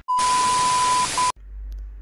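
TV-static transition sound effect: a loud burst of hiss with a steady high beep tone over it, a short break in the beep and a second brief beep, then the whole burst cuts off suddenly about a second and a third in.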